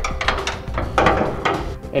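Metal handling noise as a gooseneck hitch's steel release handle is fed through the truck's frame rail: a run of small knocks and clicks with a scraping rustle about halfway through.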